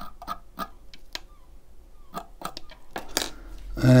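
Scattered light clicks and taps of a small metal coil tool and a box mod being handled at a rebuildable tank atomizer deck, with a low bump of handling near the end.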